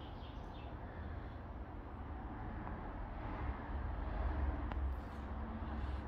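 Low, steady background rumble with no distinct event: room tone picked up while the camera moves.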